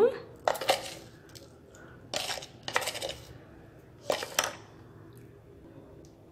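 A spoon clinking and scraping against the inside of a metal pressure-cooker pot while stirring salt into uncooked rice and jackfruit: four short clinks spread over about four seconds.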